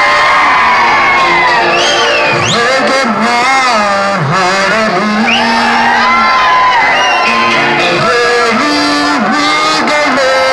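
A man singing into a microphone through a PA system, with the audience whooping in response.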